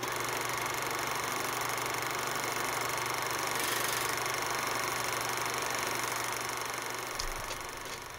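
Steady hiss, like static, with a faint low hum underneath; it drops away about seven seconds in.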